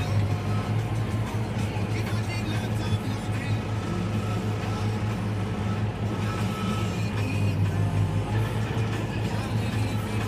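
Valtra N111 tractor's engine running at a steady drone while mowing grass for silage, with music playing over it.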